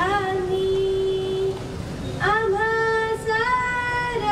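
A teenage girl singing solo into a microphone, holding long drawn-out notes: one for about a second and a half, then, after a short break, another that steps up a little in pitch near the end.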